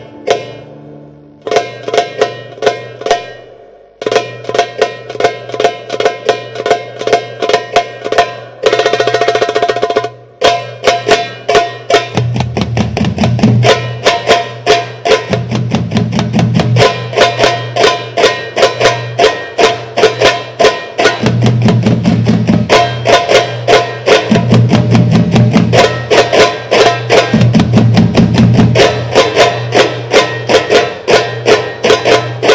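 Egyptian percussion ensemble playing in rhythm: many large frame drums struck by hand together with a darbuka. The strokes come thick and fast, with short breaks about 4 and 10 seconds in, and from about 12 seconds in, heavy low drum rolls return every few seconds.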